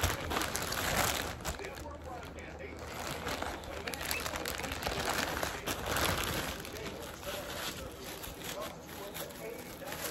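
A clear plastic packaging bag rustling and crinkling unevenly as a wig is handled and drawn out of it.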